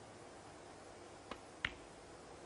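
Snooker shot: a faint click of the cue tip on the cue ball, then about a third of a second later a louder, sharp click as the cue ball strikes a red.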